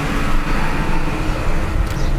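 Steady low rumble of background noise.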